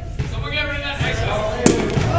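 A single sharp impact about one and a half seconds in, over the chatter of people in a large hall.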